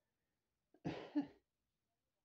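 A person clearing their throat with a short cough in two quick pushes, about a second in.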